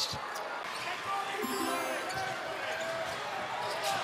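Steady crowd noise in a large basketball arena, with a few sharp knocks of the ball bouncing on the hardwood court just after the start and again near the end.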